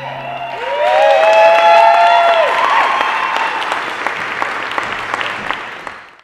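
Audience applauding after a performance, with a few voices whooping as the clapping swells about a second in; the applause then thins out and dies away near the end.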